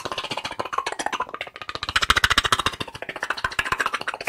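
Fast ASMR clicking from hands and mouth held close to the microphone: a rapid, unbroken run of sharp clicks, well over ten a second, loudest around the middle.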